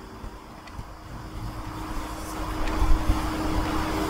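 Low rumbling noise that grows steadily louder over a few seconds, under a faint steady hum.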